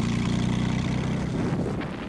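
Engine of a tracked armoured vehicle running steadily as it drives, a low even hum, dropping away near the end.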